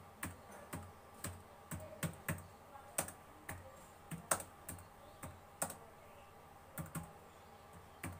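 Computer keyboard keys pressed one at a time in slow, uneven typing, about two to three keystrokes a second, with a short pause about six seconds in.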